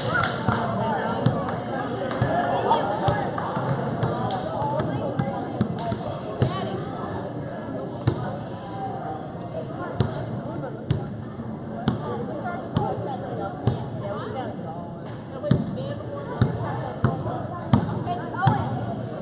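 Basketball being bounced on a gym floor, a string of sharp bounces often about a second apart, over a steady murmur of crowd chatter.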